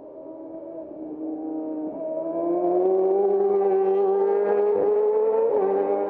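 A racing motorcycle engine at high revs, approaching from a distance. Its note rises and grows steadily louder, then holds loud over the last half, with brief breaks in the note about two seconds in and again near the end.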